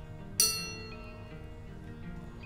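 A metal spoon hanging from a string is tapped once, about half a second in, and rings with a bright, bell-like tone that slowly fades.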